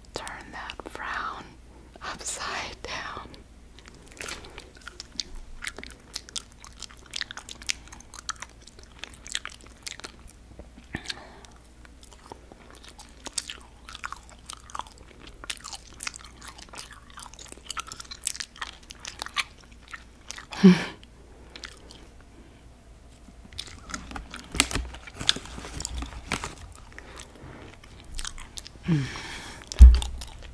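Sour gummy worms being bitten and chewed right up against the microphone: soft, sticky, wet mouth clicks and smacks throughout. A short hummed "mmh" comes near the end.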